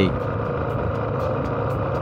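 MotorStar Cafe 400 motorcycle running at a steady cruising speed on the road, with its engine note holding even under road and wind noise.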